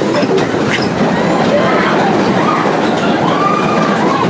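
Big Thunder Mountain Railroad mine-train roller coaster running along its track: a loud, steady rattle and rumble of the cars, with a high squeal rising and falling in the second half.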